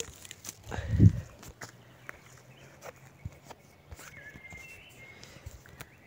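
Footsteps and rustling on a pine-needle forest floor, mixed with knocks from handling the phone, the loudest a dull thump about a second in.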